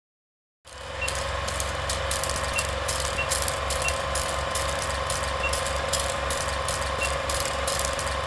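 Film projector sound effect laid under a countdown leader: a steady mechanical running with a low hum and irregular crackling clicks, starting a moment in.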